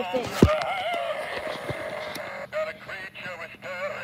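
Fire-damaged battery-powered singing Santa toy still playing its song through its small speaker, the tune warbling and wobbling in pitch. A sharp knock about half a second in.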